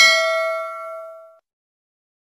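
Notification-bell ding sound effect, one ring that fades away within about a second and a half.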